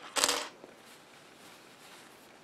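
A single brief scrape, just after the start, from the stocking darner's coiled metal spring band being handled with the sock, after which only a low background remains.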